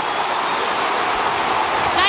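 Large stadium crowd cheering a goal in Australian rules football, a steady, even wall of noise.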